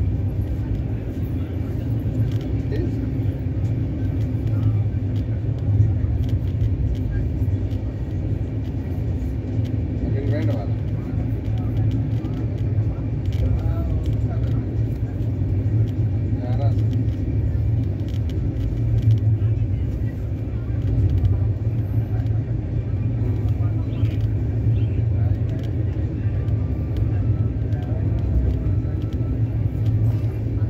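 Steady low rumble of a moving passenger train heard from inside the coach, with many small clicks and rattles over it. Faint voices come and go in the background.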